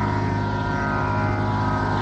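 Steady drone of a tanpura (or similar sruti drone) from a Carnatic concert recording, sounding alone between vocal phrases with unchanging sustained pitches.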